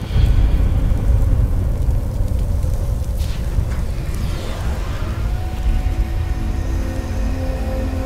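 Film soundtrack: a deep rumble breaks in suddenly and carries on under dark, tense orchestral score, whose held notes come in about five seconds in. It goes with the burning wreck of a crashed spacecraft.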